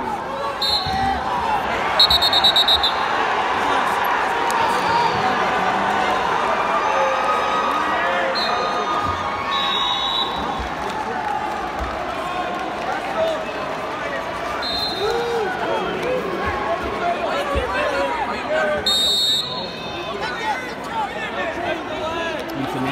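Steady crowd murmur in a large arena, cut by several short, high referee whistle blasts, the loudest about two seconds in, and a few dull thuds of wrestlers on the mat.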